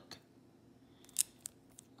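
A trading card in a rigid clear plastic holder being handled: a few short, sharp clicks about a second in, the first the loudest, over otherwise quiet room tone.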